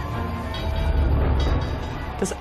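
Background music score: a deep, steady drone with faint held tones above it.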